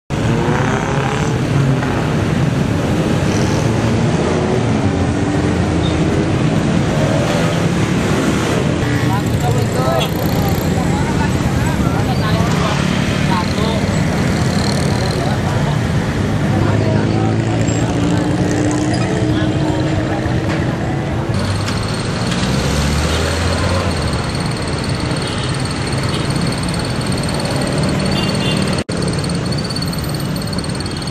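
Busy street traffic at a road junction, vehicle engines passing and rising and falling in pitch, with unclear voices in the background. The sound drops out briefly near the end.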